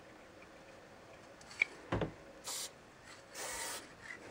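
Low-pressure Sigma spray paint can fitted with a German Outline #1 cap, sprayed in two hissing bursts: a short one for a dot, then a longer one of about half a second for a line. A couple of sharp clicks come just before.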